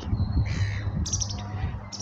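A bird calling twice, short calls about half a second and a little over a second in.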